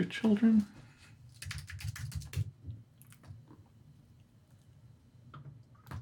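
Typing on a computer keyboard: a quick run of keystrokes about a second and a half in, then a few scattered single key presses.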